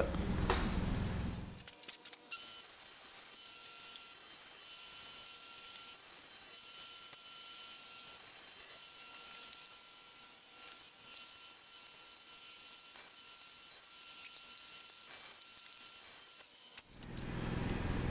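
A table saw cutting plywood panels, heard faint and thin with a steady high whine. It starts about two seconds in and stops shortly before the end.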